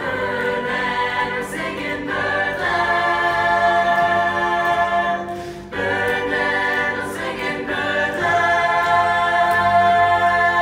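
Choir singing long held chords, with brief breaks about two seconds in and just before six seconds, growing louder near the end.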